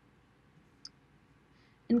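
Near silence of room tone with a single faint short click about a second in, then a woman's voice starts speaking near the end.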